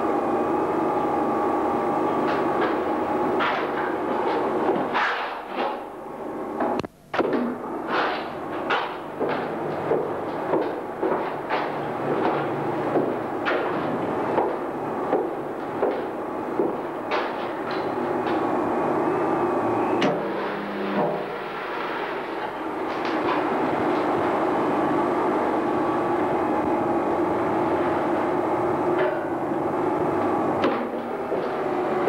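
A steady mechanical hum with a series of sharp clicks or knocks, a little more than one a second, from about five seconds in until past the twentieth second, with a brief dropout near seven seconds.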